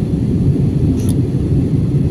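Steady low rumble of a jet airliner's cabin noise in flight, the engines and airflow heard from a window seat. A faint click about a second in.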